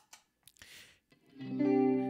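A couple of faint clicks, then an electric guitar chord in a clean tone through compressor and chorus pedals, coming in about a second and a half in and ringing on.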